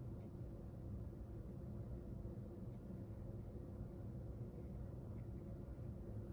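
Quiet room tone: a steady low hum with no distinct sound events.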